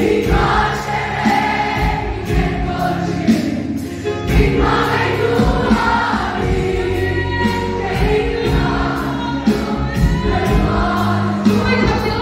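A large group of young voices singing together in chorus, with a big barrel drum beaten in a regular beat under the singing.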